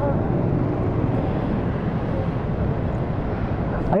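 Motorcycle engines idling and rolling slowly across a petrol-station forecourt, a steady low rumble.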